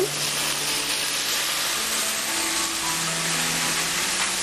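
Onions and tomatoes frying in a pan, a steady sizzle.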